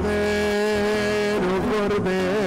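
Sung church music: a long held note over accompaniment, then the melody moves on near the end.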